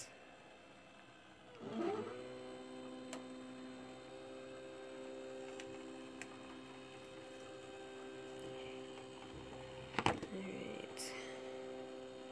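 Silhouette electronic cutting machine running as it feeds the cutting mat and cardstock through and cuts: its motor comes up with a short rising whine about two seconds in, then holds a steady hum, with a brief louder noise about ten seconds in.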